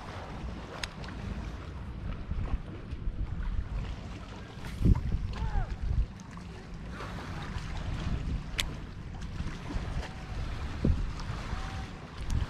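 Wind buffeting the microphone outdoors, a steady low rumble, with a low thump about five seconds in and another near the end, and a couple of light clicks.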